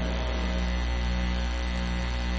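Steady electrical mains hum with a faint hiss, holding level throughout.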